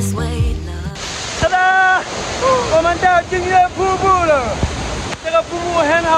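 Background music cuts off about a second in, giving way to the steady roar of a large waterfall pounding into its pool, swollen after days of rain, with a man's raised voice over it.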